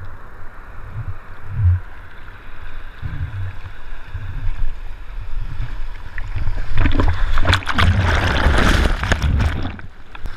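Ocean surf heard from a camera at water level: water sloshing, with low knocks against the camera. From about seven seconds in, a loud rush of breaking whitewater washes over the camera, and it cuts off sharply just before the end.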